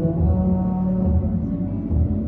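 Music with long, held low notes over a deep bass.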